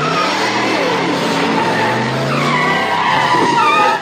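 Car engine revving with tires squealing, a film sound-effect sample dropped into a house music mix. Its pitch rises and falls several times.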